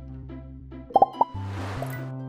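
Light, upbeat background music with steady bass notes and a pattern of short plucked notes. Just after a second in come two or three quick, loud cartoon-style pop sound effects, followed by a short swish as the music carries on.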